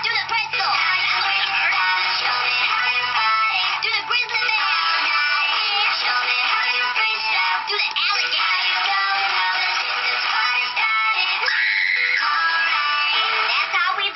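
Recorded music with singing, thin and tinny with almost no bass.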